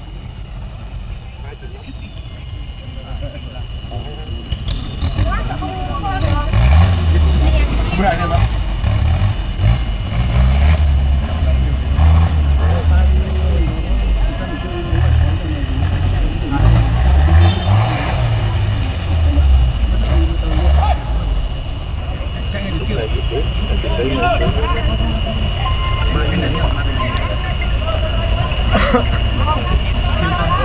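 Off-road race car's engine revving hard in repeated surges, rising and falling in pitch as it works through the course, growing louder over the first few seconds. Voices are heard alongside.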